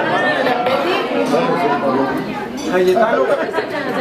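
Several people talking at once, overlapping chatter with no single clear voice, echoing in a large hall.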